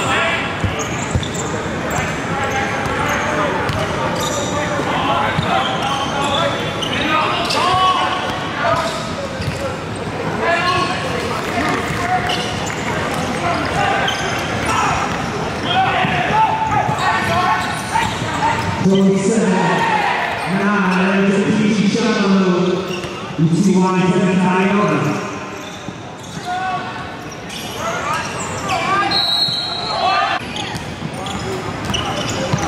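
Live gym sound of a basketball game: a basketball bouncing on a hardwood court among players' and spectators' shouts, echoing in a large hall. The voices grow louder for several seconds past the middle.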